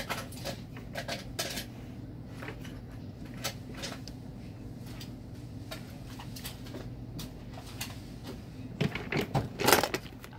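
Scattered light clicks and knocks over a steady low hum, with a cluster of louder knocks just before the end.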